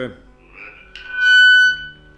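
A loud, steady whistling feedback tone on the caller's phone line, lasting about two-thirds of a second in the middle. It comes from the caller's television being turned up, so the broadcast loops back through the phone.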